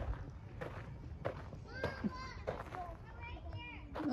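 Faint, distant children's voices calling and chattering, with a few soft footsteps on a gravel path.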